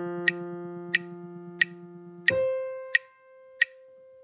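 Clarinet playing a register slur: a held low G, then about two seconds in a clean jump up a twelfth over the register key to high D, held more softly. A metronome clicks steadily under it, about three clicks every two seconds.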